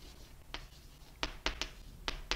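Writing on a board: short, sharp taps of the writing tool against the surface, one about half a second in, then three in quick succession around a second and a half.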